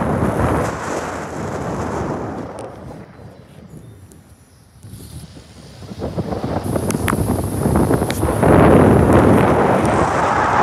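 Wind buffeting the microphone of a phone filming from a moving car, a dense rushing noise. It dies down to a low hush about four seconds in, then builds again and is loudest near the end.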